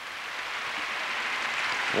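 Crowd applauding a finished rings routine, the clapping swelling steadily louder.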